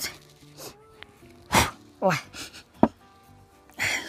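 A drinking glass and a fork set down on a cloth-covered table: a sharp knock, then a lighter click about a second later, over faint background music.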